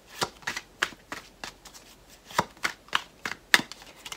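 A tarot deck being shuffled by hand: a run of irregular, short, sharp card clicks, the loudest about three and a half seconds in.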